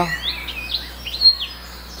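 Small birds chirping: a few short, high, rising-and-falling calls spaced through the pause.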